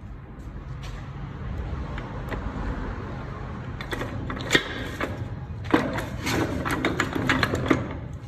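Steel gears and shift forks of a Volkswagen 0AM dual-clutch gearbox clinking and knocking as they are handled in the open case. A few sharp clicks come about halfway through, then a quick run of clinks and clanks fills the last couple of seconds, over a low steady rumble.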